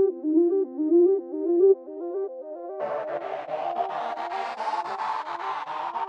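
Instrumental electronic 'type beat' music: a quick, repeating arpeggio of stepped synth-like notes. About three seconds in, deeper bass notes and a bright, swelling wash with a fast even pulse join it.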